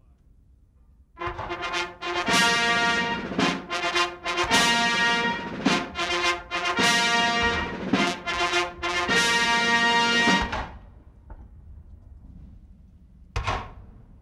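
Brass band playing a national anthem in slow, held notes, starting a little over a second in and stopping about three seconds before the end. A single sharp thump follows near the end.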